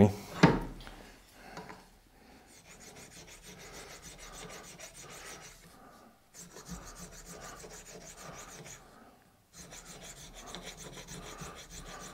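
A single knock about half a second in, then a hand-made hardened-steel scraper in a wooden holder drawn in repeated strokes across a slab of water buffalo horn clamped in a vise. It is a dry scraping that pauses briefly twice.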